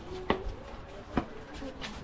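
Three short, sharp knocks, one shortly after the start, one in the middle and one near the end, over low background noise.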